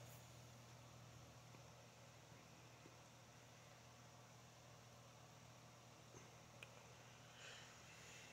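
Near silence: room tone with a faint steady low hum and a couple of tiny clicks near the end.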